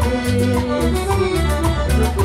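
Live Latin dance band playing loud through a PA, with a steady beat from bass and timbales-led percussion and a woman singing.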